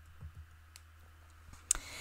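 Faint clicks in a quiet pause over a low steady hum: a few small ones in the first second, then a sharper click shortly before the end.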